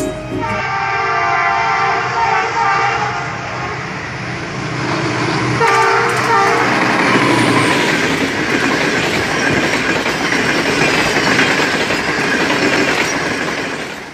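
Train horn sounding one long blast, then a short one a few seconds later. After it comes the loud, steady rush and rattle of a passenger train passing close at speed.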